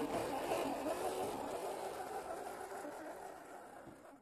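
Electric motor and gears of a 1/10-scale RC Toyota Land Cruiser crawler whirring as it climbs over loose gravel and dirt. The sound fades steadily as the truck drives away.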